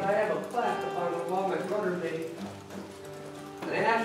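A person's voice with acoustic guitar playing softly underneath.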